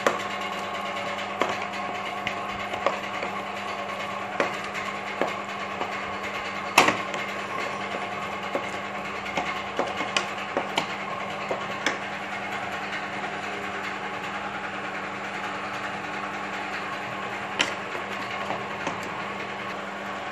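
Masala sauce and water boiling in a wok, a steady bubbling hiss over a faint hum, with scattered sharp clicks and taps, the loudest about seven seconds in.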